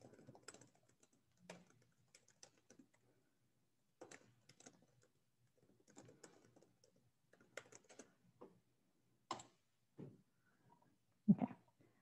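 Faint computer keyboard typing: irregular clusters of keystrokes with short pauses between them.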